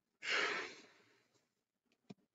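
A man's long sigh: one breathy exhale that starts strongly and fades away over about a second.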